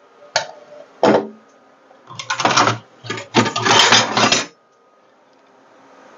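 Crockery and kitchenware being handled and moved about: two sharp knocks in the first second, then two bursts of clattering and rattling about two and three and a half seconds in.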